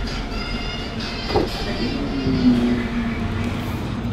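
Restaurant ambience: a steady din of kitchen and room noise, with a short clatter about a second and a half in and a brief low hum in the second half.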